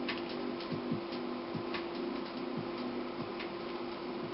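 5x5 puzzle cube being turned by hand: irregular plastic clicks as its layers are twisted, a few each second, over a steady low hum.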